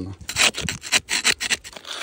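A metal tool scraping and prying against rock to work a limpet loose, in several short, rough scraping strokes that die away in the last half second.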